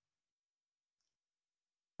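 Near silence: the amplifier and speaker give no sound at all.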